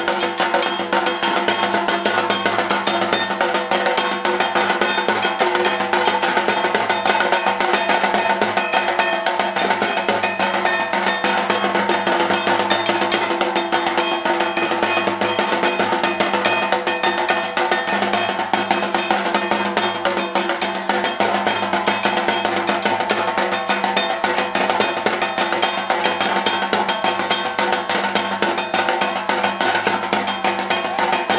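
Fast, dense drumming in steady rhythm with sustained musical tones underneath: loud, continuous drum music for the dhunuchi dance with clay incense pots.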